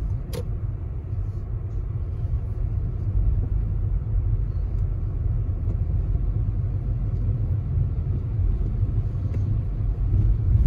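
Steady low rumble of a car driving on a slushy, snowy road, heard from inside the cabin, with one brief click about half a second in.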